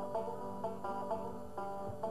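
Five-string banjo picked in a bluegrass tune, a quick, even run of plucked notes.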